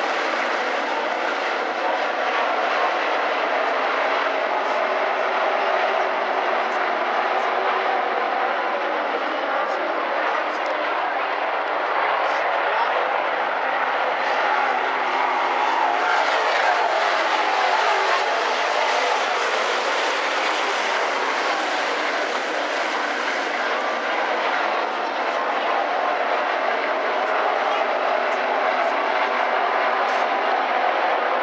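A pack of dirt-track modified race cars running together at racing speed: a loud, steady engine noise from the whole field that holds level throughout.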